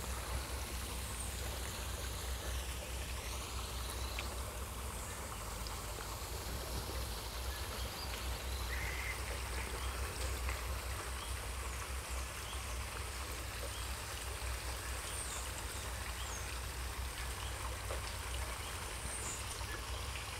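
Shallow river water flowing and trickling steadily, with a low rumble underneath.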